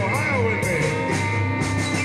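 Live blues band playing: electric guitars, bass, keyboard and a drum kit with cymbal strikes, and a lead line of notes bending up and down.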